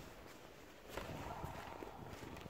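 Faint footsteps and phone-handling noise, getting slightly louder about a second in, with a faint steady hum behind them.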